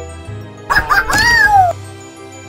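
A single long meow, rising then falling in pitch, over background music with a steady bass line.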